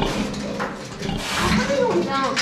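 Pigs vocalizing in a pen: a harsh, noisy burst a little past halfway, then a short call that bends up and down in pitch near the end.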